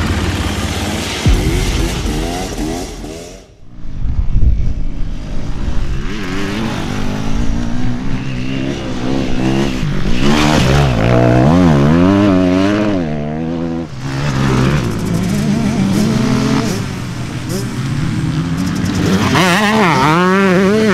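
Dirt bike engines revving hard on a motocross track, the pitch sweeping up and down again and again as the throttle is opened and closed. A short intro sound effect with a low thump fills the first few seconds.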